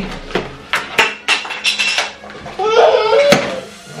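Plastic takeout containers and dishes being handled and set down on a glass tabletop: a string of sharp clicks and knocks.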